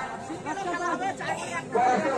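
Several men talking at once: the chatter of players and onlookers at the field.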